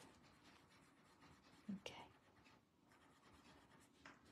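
Near silence with faint scratching of a paper tortillon rubbed over white chalk pencil on a card drawing tile.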